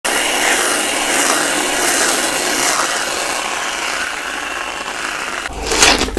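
Aerosol can of whipped cream spraying, a steady hiss for about five seconds that eases slightly as it goes. Near the end, a bite into a fresh strawberry.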